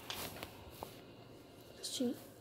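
Mostly quiet room with a few faint, light clicks in the first second and a brief soft rustle near the end.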